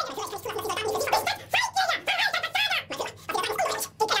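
A man speaking German, pitch-shifted up into a high, squeaky voice.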